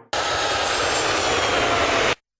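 Jet airliner engines running loud: a steady rushing noise with a faint high whine. It cuts off suddenly at the end.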